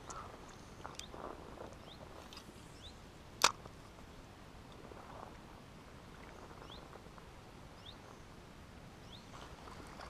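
Faint, steady outdoor background by a river, broken by one sharp click about three and a half seconds in and a smaller one about a second in, with a few faint short chirps scattered through.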